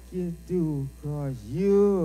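Blues harmonica playing short phrases of held notes that bend down and back up in pitch, over a steady low electrical hum from the amplification.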